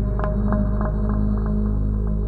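Ambient space-themed drone music: a steady low hum with slowly swelling tones, overlaid by a run of soft evenly spaced ticks, about three a second, that grow fainter.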